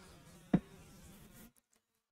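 Faint steady room noise with a single brief short sound about half a second in. The audio then cuts out entirely near the end.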